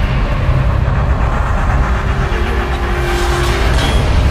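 Cinematic intro music and sound design with a heavy, continuous low rumble, a held tone in the middle, and a swelling whoosh near the end.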